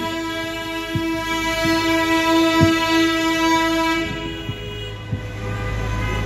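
A vehicle horn sounds one long steady blast for about four and a half seconds, with a few faint knocks, and other horn tones carry on near the end. It is the honking of a large vehicle convoy moving through the streets.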